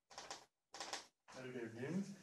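Dry-erase marker scratching across a whiteboard in two short strokes during the first second, as a word is being written. A man's voice begins near the end and is the loudest sound.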